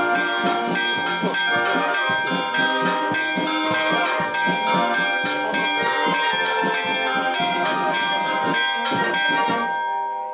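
Church bells ringing rapidly in a festive peal, many overlapping strikes with tones that ring on, stopping just before the end.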